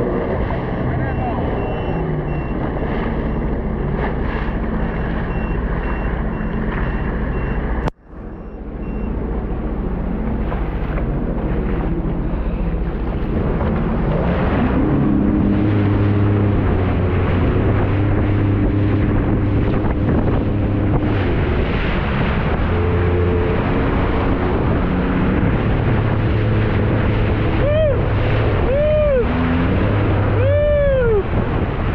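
Sea-Doo jet ski engine running under way, its drone mixed with the rush of water and wind. The sound drops out sharply for a moment about 8 seconds in. In the second half the engine note steps up and down as the throttle changes.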